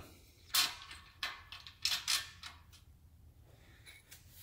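About five short clicks and taps in the first two and a half seconds: a steel mounting bolt being pushed through drilled holes in a hand truck's steel frame rail and foot-brake mounting bracket.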